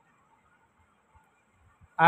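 Near silence in a pause between speech: faint room tone with a faint steady high-pitched hiss from the recording.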